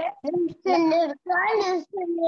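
A young child's voice reciting Hindi syllables in a drawn-out, sing-song way: three long syllables.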